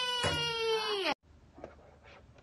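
A high-pitched voice calling out "Patrol! Whee!", the "whee" held and sliding down in pitch at the end. It cuts off abruptly just after a second in, leaving near silence.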